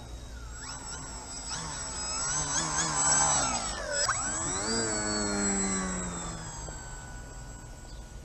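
Electric motor and propeller whine of a radio-controlled aircraft flying low past the camera. The buzz grows louder for the first few seconds, its pitch drops sharply as it passes about four seconds in, and then it fades away.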